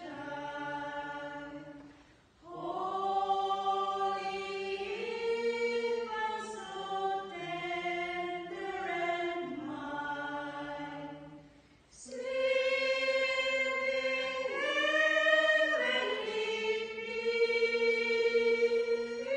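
A small group of women singing a Christmas carol together in held, sustained notes, with two short breaks between phrases, about two seconds in and again near twelve seconds.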